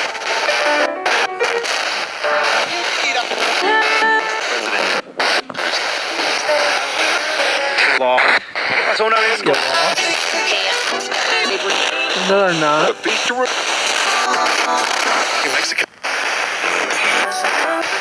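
Spirit box radio sweeping rapidly through stations: a steady rush of static broken into short snippets of music and voices. A few brief dropouts come as it skips between frequencies.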